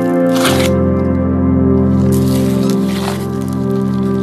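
Background music of sustained chords. Over it, slime squelches wetly as a gloved hand squeezes it, about half a second in and again near three seconds.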